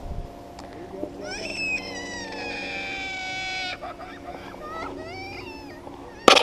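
A young child crying: one long high-pitched wail of about two and a half seconds that slowly falls in pitch, then a few shorter wavering cries about a second later. A little kid has been caught by a fishing hook.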